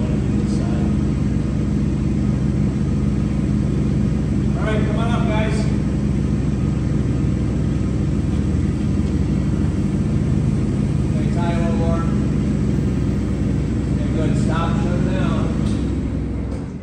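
Forklift engine idling steadily.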